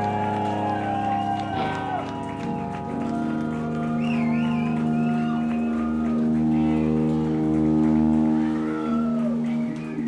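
Live rock band music: long held chords, with notes sliding and wavering above them.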